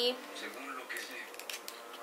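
Faint rustling and a scatter of light clicks from fingers handling a small paper sample packet.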